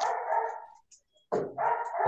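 A dog barking in two bursts, the second starting about a second and a half in, picked up over a video call.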